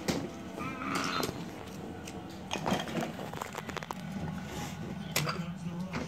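Low voices in the background, with a few sharp knocks and clicks from a toddler handling a cardboard pop-up book: one at the start, one under three seconds in and one about five seconds in.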